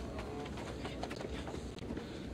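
Low outdoor background ambience with a steady low rumble and a few faint, brief sounds.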